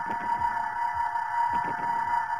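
Animated underwater sound effect: a steady, sonar-like hum with low gurgles gliding downward in pitch, like bubbles, recurring about once a second.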